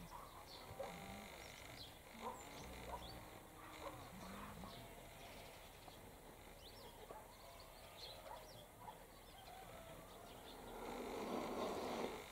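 Faint outdoor birdsong: small birds chirping on and off, with some lower, longer calls in the first few seconds and a hiss rising near the end.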